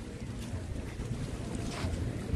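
Wind buffeting the microphone: an uneven low rumble with a light hiss over it.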